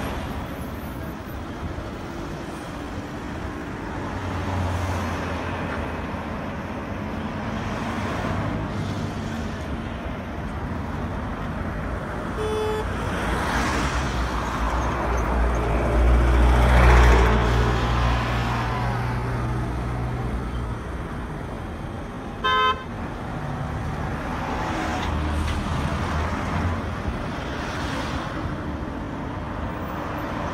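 Road traffic passing close by, cars driving past with the loudest going by a little past halfway. Two short car horn toots sound, a faint one a little before halfway and a louder one about three-quarters through.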